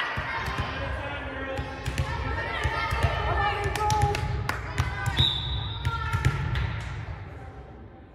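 Gym sounds of a volleyball rally: sharp ball hits and thuds on the hardwood court over a low rumble, with scattered voices of players and spectators echoing in the hall. A brief high steady tone sounds about five seconds in, and the sounds die down near the end.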